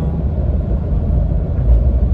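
Steady low rumble of tyre and engine noise inside a car's cabin while cruising along a highway.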